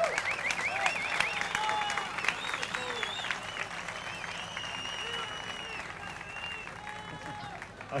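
Audience applauding, with high whistles over the clapping; the applause dies away near the end.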